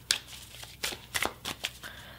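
A deck of oracle cards being shuffled by hand: a string of short, irregular card snaps and slides.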